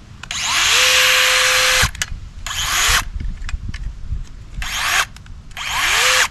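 DeWalt DCS438 20V MAX XR brushless cut-off tool motor triggered four times, running free with no cutting wheel fitted. Each run is a whine that rises as the motor spins up. The first is held for about a second and a half, and the other three are brief blips.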